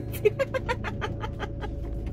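A comedy sound effect: a rapid run of short pitched calls, about eight a second, fading out after about a second and a half, over the steady low drone of the motorhome on the road.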